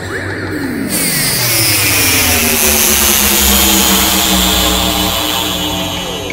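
A loud rushing, whooshing sound effect laid over chant-like film music: it starts suddenly with a falling sweep, swells to a peak about three to four seconds in, then fades.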